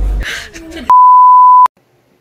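A single loud electronic beep at one steady pitch, the classic censor-bleep tone, starting about a second in and cutting off sharply after about three quarters of a second.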